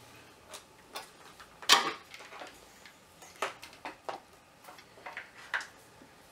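Scattered light clicks and knocks of a plastic handheld oscilloscope-multimeter being handled and stood upright on a workbench, the sharpest knock about two seconds in.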